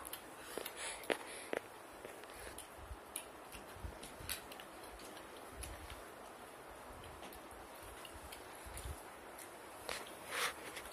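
Faint scattered small clicks and handling noises from hands picking food out of bowls and eating, over a steady room hiss.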